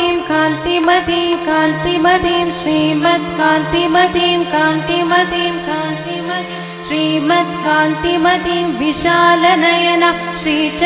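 A woman singing Carnatic vocal music: a continuous melodic line with sliding ornaments over a steady drone.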